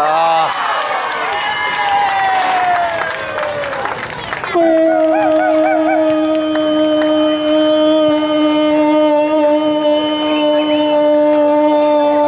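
Spectators yelling and cheering with many voices at once; about four and a half seconds in, a horn starts suddenly and is held on one steady note for the rest of the time, louder than the voices.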